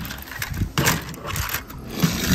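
A small toy car's plastic wheels rolling and clicking on a plastic playground slide as it is pushed, with a few light taps and rattles.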